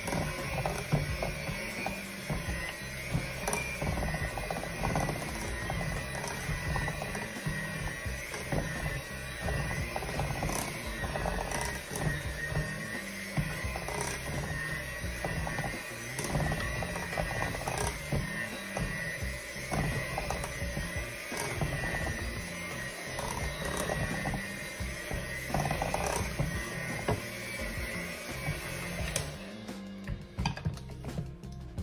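An electric hand mixer runs steadily, its beaters churning thick peanut butter cookie dough as the dry ingredients are mixed into the wet. Its motor whine stops shortly before the end. Music plays underneath.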